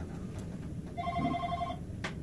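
Electronic ringer of a desk telephone trilling: one short warbling ring about a second in.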